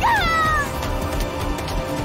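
A woman's short cry of pain at the very start, falling in pitch and dying away within about a second, over dramatic background music with steady held notes.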